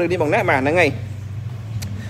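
A man speaks for about the first second, then a steady low hum carries on alone, with one faint click near the end.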